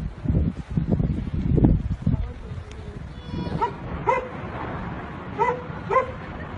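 Uneven low rumble of wind buffeting a phone microphone during the first two seconds. After that come about four short, high-pitched yelps, spaced irregularly over the second half.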